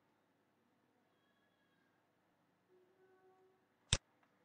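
Near silence with faint room hiss, then a single sharp computer mouse click near the end.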